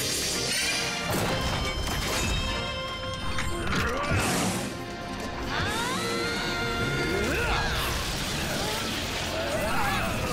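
Cartoon battle sound effects, crashes and impacts, over dramatic background music. Several sweeping rises and falls in pitch come through in the middle.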